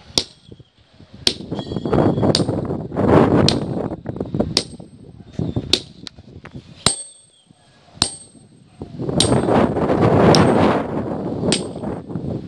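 A hammer striking a steel bar set into quarry stone at about one ringing metallic clang a second. A louder rushing noise swells twice between the strikes.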